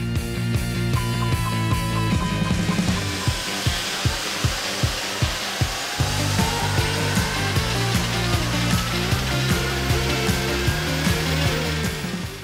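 An Airbus A320-family airliner's jet engines running on a ground test run, a steady rushing sound with a whine that rises slowly in pitch over the second half, mixed with background music with a steady beat.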